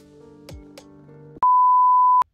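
Faint background music, then about one and a half seconds in a loud, steady single-pitched beep cuts in: the test tone of a TV 'no signal' screen, used as an editing sound effect.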